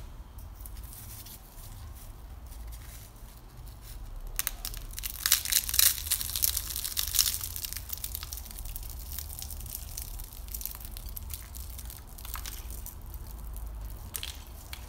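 Crisp baked yufka börek being pulled and broken apart by hand, its flaky pastry layers crackling and crunching. The crackling is heaviest from about four to eight seconds in, then lighter crackles follow as the pieces are torn further. The pastry is still crisp three hours after coming out of the oven.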